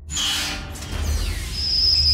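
Logo intro sound design: a sudden whooshing sweep that falls in pitch over a deep bass rumble, with a steady high ringing tone coming in about one and a half seconds in.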